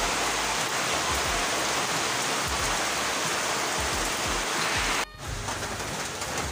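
Heavy rain pouring down, a steady even hiss. It drops abruptly about five seconds in and goes on quieter.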